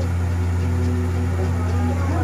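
A steady low machine hum, unchanging in pitch and level.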